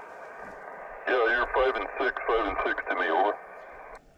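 Hiss of a Yaesu FT-857D's receiver on 2 m single sideband coming through the radio's speaker, then a distant station's voice through the same speaker for about two seconds, thin and narrow like telephone audio, before the hiss returns.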